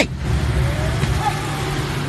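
A car running: a steady low rumble with a faint note rising slowly through the first second.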